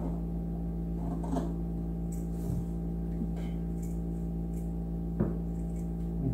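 Scissors snipping through a knit sock a few times, faint over a steady low electrical hum.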